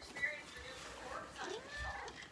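A house cat meowing faintly, one call that rises and then falls in pitch about a second and a half in.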